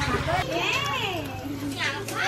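Children chattering and calling out in high voices, some rising and falling in pitch. Under them a low rhythmic rumble stops about half a second in.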